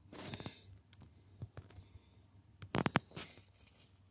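Quiet car cabin with faint rustling and a few scattered light clicks, then a quick run of sharp clicks a little under three seconds in.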